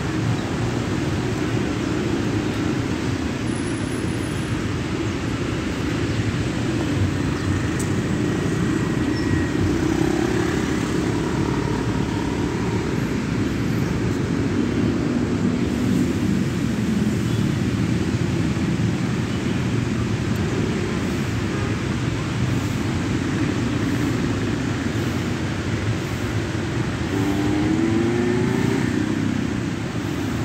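Steady low rumble of road traffic and idling vehicle engines, with one engine note rising near the end.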